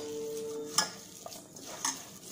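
A hand squeezing and mixing crumbly pakoda dough in a stainless steel bowl: soft squishing and scraping, with two sharp clicks of metal against the bowl, the first just under a second in and the second near the end.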